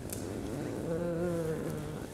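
A woman's soft, drawn-out hesitation "uh", held on one slightly wavering pitch for nearly a second, starting about a second in.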